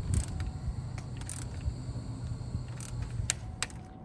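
Hand ratchet clicking in a few short, separate bursts as handlebar riser clamp bolts are run down in turn to build clamping force, over a low steady hum.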